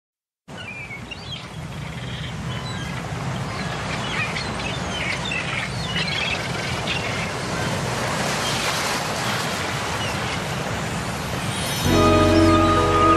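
Birds chirping over a steady outdoor ambience that fades in and grows louder. Music with sustained chords and bass starts just before the end.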